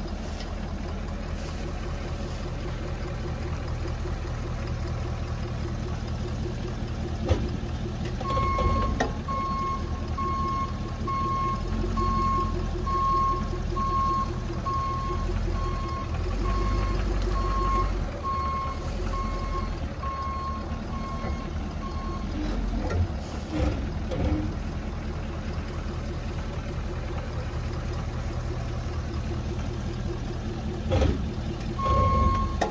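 Ford F-350 pickup's engine running at a slow crawl as the truck rolls over a shallow pipe trench. A reversing alarm beeps steadily from about a third of the way in until about three quarters through, and there are a few brief knocks near the start and end of the beeping.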